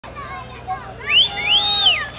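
Shrill, high-pitched whooping cries from performers or crowd: two long calls that rise and fall in pitch in the second half, the loudest sounds here, over fainter voices and a steady low hum.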